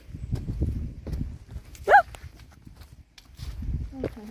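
Footsteps on a dirt forest trail, irregular soft thuds and crunches, with one brief rising-and-falling vocal sound about halfway through.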